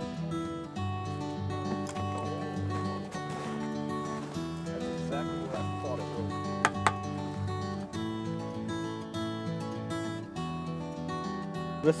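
Background music led by a strummed acoustic guitar, with two sharp clicks a little past the middle.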